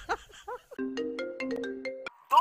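A short ringtone-like electronic jingle, a few held notes with sharp clicks over them, starting under a second in. It is the kind of sound effect that goes with an on-screen subscribe-button animation. A brief voice comes just before it.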